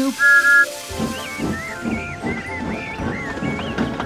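A steam locomotive whistle sound effect gives a short double toot on two notes. About a second in, background music starts, with a whistle-like melody over a steady beat.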